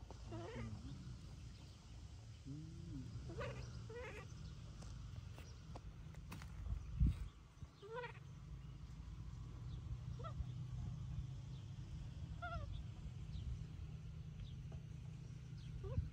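Baby monkey giving short, high, wavering cries, about half a dozen spaced a second or more apart. A single dull bump near the middle is the loudest sound.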